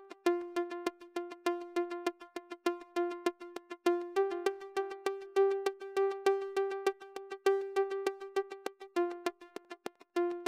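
Logic Pro X Retro Synth pluck patch playing a quick run of short repeated notes that move between two close pitches. Its amp decay time is modulated by a smoothed random LFO, so each note rings for a different length: a constantly evolving little synth pluck.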